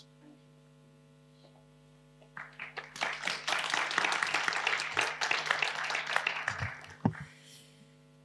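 Audience applauding for about four seconds, starting a couple of seconds in, over a steady electrical mains hum from the sound system. A few low thumps come near the end as the applause dies away.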